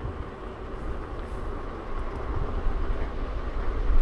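NIU KQi 2 Pro electric kick scooter riding over a rough path: a steady low rumble and rattle from its 10-inch tubeless tyres and frame, mixed with wind on the microphone, growing a little louder in the second half.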